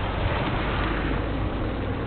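Motor scooter engine idling steadily close by, with a low, even running sound.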